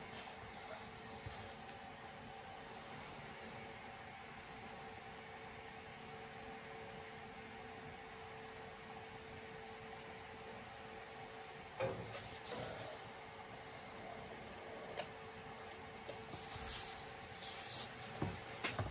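Faint steady hum in the room. In the second half there are a few light knocks and short scrapes as the canvas on its turntable is handled and turned.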